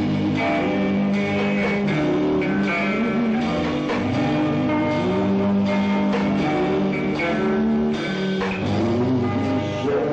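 Rock band playing an instrumental, guitar-led passage of a 1960s-style beat song, with electric guitars over drums at a steady loud level.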